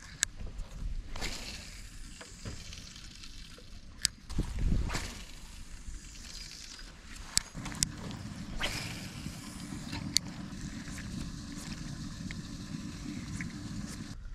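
Cheap spinning reel being cranked while a jerkbait is worked back, with clicks and rustles from handling the rod. From about eight seconds in the reeling turns into a steady low whir.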